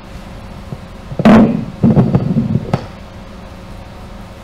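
Handheld microphone being set down and handled on a table: a sharp, loud knock about a second in, then about a second of bumping and rubbing handling noise. A steady room hum runs underneath.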